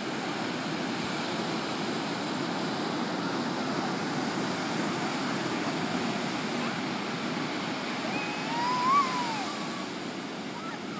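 Ocean surf breaking and washing up the beach, a steady rush. Near the end a child's high voice calls out once, rising and then falling in pitch.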